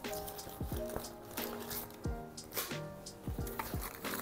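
Soft background music with held notes, over scattered light rustles and knocks of items being taken out of a fabric diaper bag.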